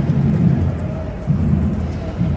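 Wind buffeting a phone's microphone outdoors: an irregular low rumble, over faint street noise.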